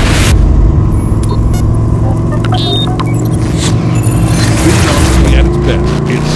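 A whoosh at the start, then scattered clicks and chirps of an animated intro, over a B-Modified dirt-track race car's engine running steadily. The engine rises slightly in pitch near the end.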